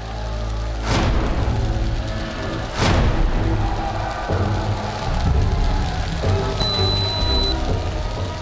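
Dramatic background music: a low sustained score punctuated by two heavy hits, about one and three seconds in.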